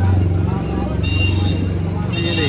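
A steady low motor hum with evenly spaced overtones runs throughout, with people's voices over it. A brief high steady tone sounds about a second in.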